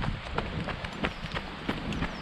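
Running footsteps on a dirt woodland path, about three strikes a second, over a low rumble of movement on the microphone.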